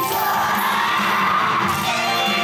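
Yosakoi dance music playing over loudspeakers, with the dancers shouting together over it.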